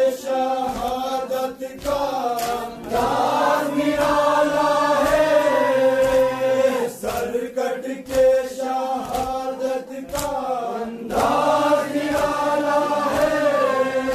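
Men's voices chanting a noha, a Shia mourning lament, together in long held lines. Under it come sharp slaps of hands striking chests in sina zani, most often between the sung lines.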